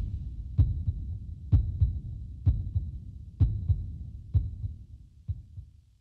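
A recorded heartbeat sound effect: six 'lub-dub' double thumps, about one a second, fading away toward the end. A faint steady high tone sounds behind the first few beats.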